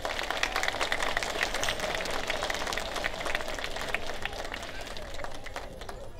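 Audience applauding, the clapping thinning out near the end.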